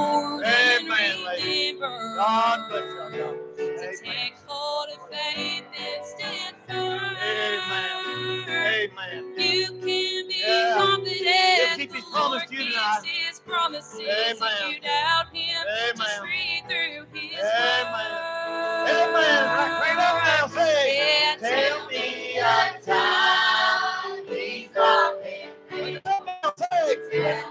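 Large youth and children's choir singing a song together, women's voices leading on microphones, over instrumental accompaniment with sustained low bass notes.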